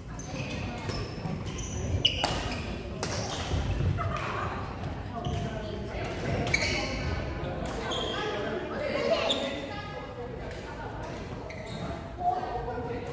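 Badminton rallies in a large sports hall: rackets striking the shuttlecock as sharp clicks at irregular intervals, each ringing on in the hall's echo, with footfalls on the wooden court between them.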